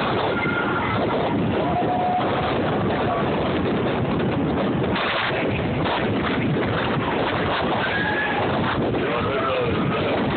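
Steady rush of wind buffeting the microphone, mixed with the running noise of a moving train, heard from an open-air railcar. A few faint short squeals and knocks come through it.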